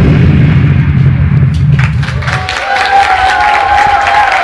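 Loud dance music with a heavy bass beat that stops about two seconds in, followed by an audience clapping and cheering, with one long held cheer over the applause.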